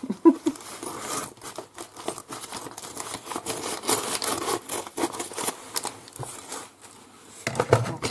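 Crinkling and rustling of a plastic poly mailer bag, handled and pulled open as the parcel inside is worked out, in a rapid run of small crackles that eases off near the end.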